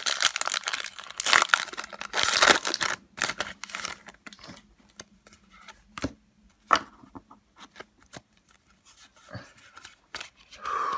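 A foil Pokémon trading card booster pack being torn open, its wrapper crinkling, loudest in the first three seconds. After that come scattered short clicks and rustles as the cards are handled.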